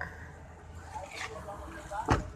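Faint voices over a low steady hum.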